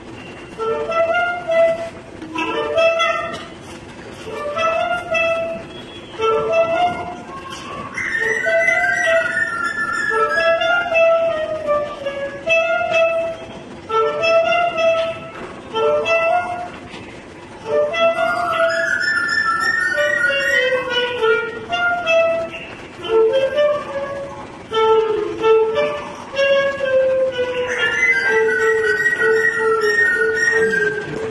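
A clarinet plays short repeated phrases about once a second. A white-crested laughing thrush answers in three bursts of loud chattering song with sliding notes, overlapping the clarinet.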